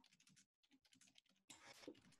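Near silence with faint, scattered clicks of computer-keyboard typing coming through a video-call microphone.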